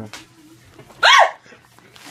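A single short, high-pitched yelp about a second in, rising and then falling in pitch, over quiet room sound.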